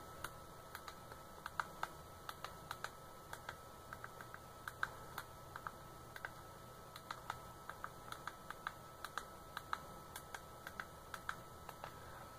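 Keys on a computer keyboard tapped one at a time, light separate clicks at an uneven pace, as a password is typed in.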